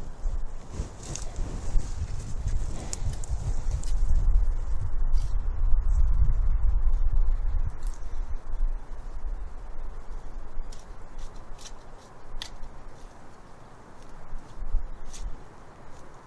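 Spade digging into mulched garden soil: scattered sharp scrapes and clicks as the blade cuts in and lifts earth, with a low rumble through the middle seconds.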